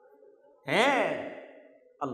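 A man's long voiced sigh through a headset microphone: one drawn-out 'aah' that comes about two-thirds of a second in, its pitch rising then falling, and fades away over about a second.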